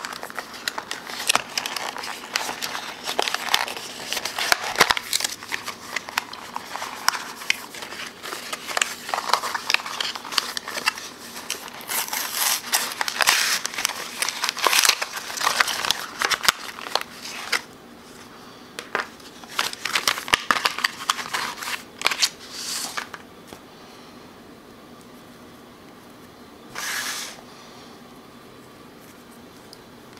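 Cardboard box and inner packaging being handled and opened by hand: rustling, scraping and many small clicks and taps. The handling eases off about two-thirds of the way through, with one short rustle near the end.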